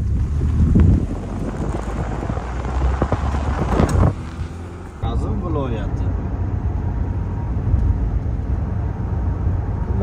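Road and wind noise of a car driving at highway speed, heard from inside the cabin as a steady low rumble. It swells louder twice in the first four seconds, drops briefly just after four seconds in, then runs on steadily.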